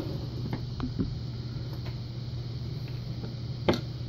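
A few light clicks and taps of a lock plug and its small metal pins being handled and set into a wooden pinning tray, with a sharper click near the end, over a steady low hum.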